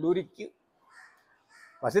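A man speaking, with a short pause in which a crow caws faintly in the background, once, about a second in.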